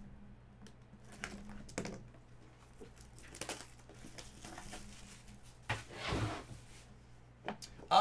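Clear plastic shrink wrap being picked at and torn off a trading-card box: scattered crinkles and small tears, with a louder rip about six seconds in.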